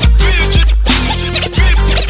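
Hip hop beat with no rapping: a deep bass and drum groove with repeated turntable scratches over it.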